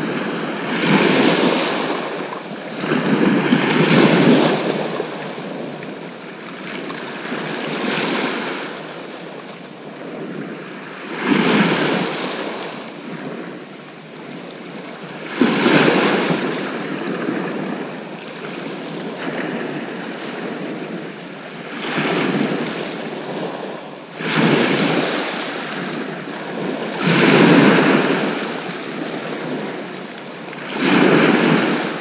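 Sea waves breaking and washing over a shingle beach, each surge swelling and fading roughly every three to four seconds.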